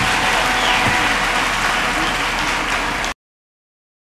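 Large audience applauding, a dense steady wash of clapping that cuts off suddenly about three seconds in.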